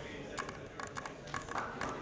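Paper being pulled off a wall board: a few short, sharp crackles and rips through the middle, over a low murmur of voices in the room.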